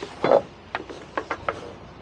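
Short knocks and thumps from someone moving about on a boat and stepping onto a dock: one heavier thud just after the start, then a quick run of lighter knocks about a second in.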